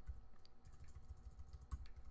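Faint typing on a computer keyboard: scattered key clicks, with one sharper click near the end.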